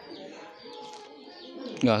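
Faint bird calls in the background, cooing like doves with small high chirps, until a spoken word near the end.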